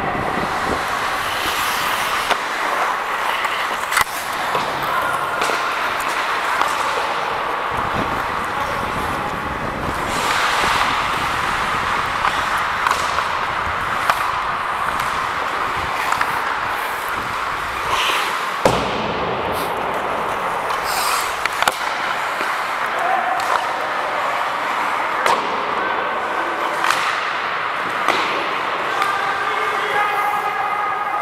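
Live ice hockey play: a steady wash of skate blades scraping the ice and rink noise, broken by scattered sharp knocks of sticks and puck against the ice and boards, with players' voices calling in the distance.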